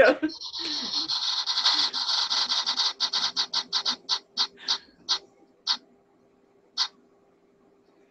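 Spin-the-wheel app's ticking sound effect: a fast stream of clicks that slows and spreads out as the wheel coasts to a stop, with the last few clicks well apart and the final one about seven seconds in.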